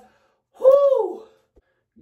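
A man's single high-pitched cry that rises and then falls, lasting under a second, about half a second in: a reaction to a nerve stimulator's electric shocks running through his neck at full strength.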